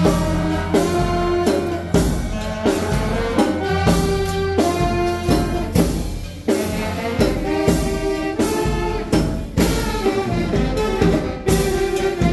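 Marching band playing live: saxophones and horns carrying a melody over a steady march drum beat of about three strokes every two seconds.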